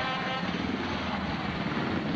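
Several speedway motorcycles' single-cylinder engines running at low revs as the riders ease off after the race, a steady mechanical rumble.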